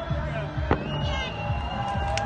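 Aerial fireworks display with a single sharp bang about two thirds of a second in, as the last bursts die away, over background music and voices.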